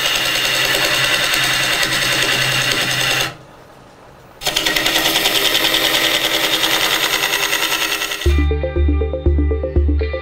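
Bowl gouge cutting into a basswood blank turning slowly on a wood lathe: a loud, rough shaving noise with a fast pulsing. The noise stops for about a second, then resumes. Near the end it gives way to background music with a steady bass beat.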